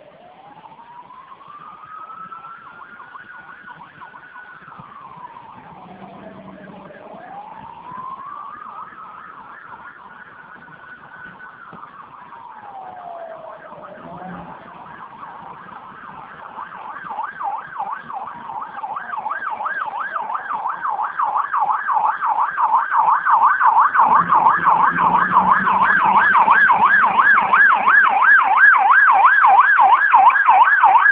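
Emergency vehicle sirens. A slow wail rises and falls twice, then a fast warbling yelp takes over about halfway through and grows steadily louder, as a vehicle approaches.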